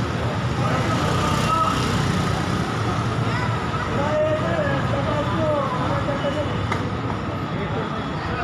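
Steady outdoor rushing noise with the raised voices of onlookers calling out, strongest around the middle.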